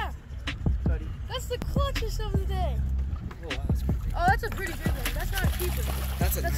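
Excited voices calling out in bursts over a low steady hum, with scattered clicks.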